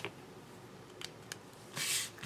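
Light clicks of plastic felt-tip pens set down on a table, then a short rubbing swish near the end as a hand slides across the surface.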